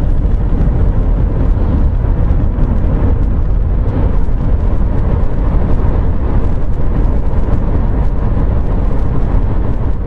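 Steady road and wind noise inside a Mercedes-Benz car's cabin while driving at speed, a loud, dense rumble heaviest in the lows.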